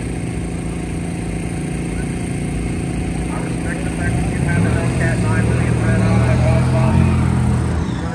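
A motor vehicle's engine running close by with a steady low drone, growing louder about halfway through and easing near the end.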